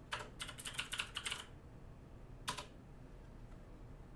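Computer keyboard typing: a quick run of about ten keystrokes in the first second and a half, then a single keystroke about two and a half seconds in, entering the typed command.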